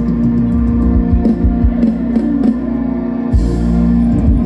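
Live ramwong band music: electric guitar with bass and drums, one note held long over a steady bass line.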